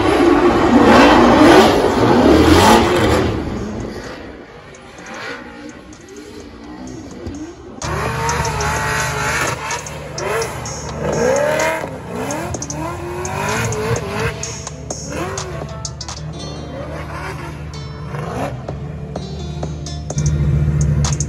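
Drift cars' engines revving hard while sliding with tyres spinning, loudest in the first three seconds. From about eight seconds in, engine revs rise and fall again and again over music with a steady bass.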